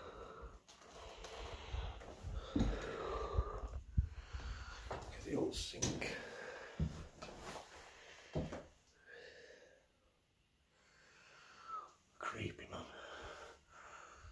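A person breathing close to the microphone, with scattered light clicks and knocks. The sound dies away almost to nothing about ten seconds in, then comes back.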